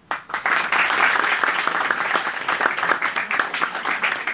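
Audience applauding: many hands clapping together, starting abruptly and keeping up a steady level.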